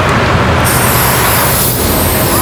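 Loud city street traffic noise, with a high hiss joining about half a second in.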